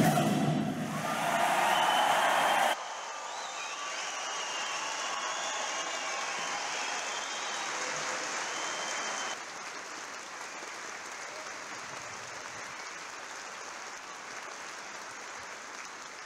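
Concert-hall audience applauding at the end of an orchestral and choral performance, loudest at first with the last of the music still under it. The level drops suddenly about three seconds in and again about nine seconds in, leaving steady applause.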